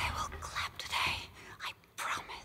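A person whispering a few short, breathy words, fading to near silence just before the end.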